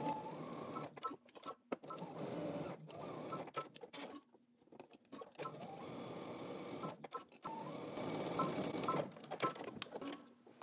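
Domestic electric sewing machine stitching a seam through two layers of fabric. It runs in several stretches with short stops between them, the longest stop about four seconds in.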